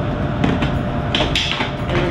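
A few knocks and clinks of bottles and glassware being handled and set down on a bar counter: one about half a second in and a quick cluster a little past a second in, over a steady low rumble.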